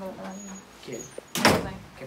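Voices talking low, then about one and a half seconds in a single short, loud thump with a brief rustle after it.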